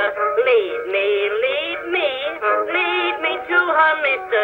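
An early acoustic phonograph recording of a voice singing, with held, wavering notes. It sounds thin and boxy, with no bass and no treble.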